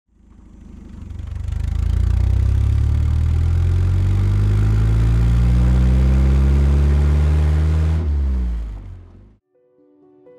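A car engine under load, swelling up and then climbing slowly and steadily in pitch for several seconds. It drops away about eight seconds in and fades out shortly after.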